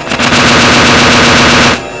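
A loud burst of rapid-fire electronic noise, dense repeating pulses over a steady low tone, that cuts off abruptly near the end.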